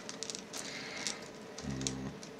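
Faint, light metallic clicks and taps of steel lock picks and a tension wrench knocking against a Euro cylinder lock as they are brought up to its keyway, with a brief low hum of a voice near the end.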